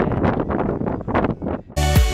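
Wind gusting on the microphone, then electronic background music with a steady beat cuts in suddenly near the end.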